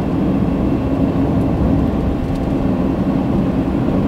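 Steady road and engine noise inside a moving car's cabin: a continuous low rumble of tyres on the road with an even engine hum.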